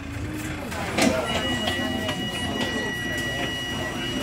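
A bus's door warning tone: after a click about a second in, a steady high two-pitch tone sounds without break while the open doors are about to close, over the low rumble of the idling bus.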